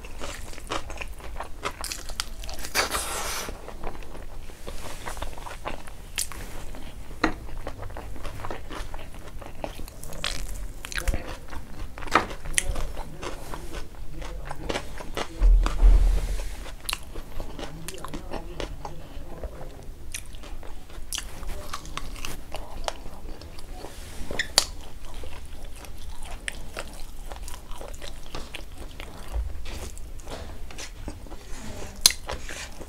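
A person eating close to the microphone, scooping rice and dal by hand and biting meat off a chicken wing: a steady run of many small sharp chewing and mouth clicks, with a heavier low thump about halfway through.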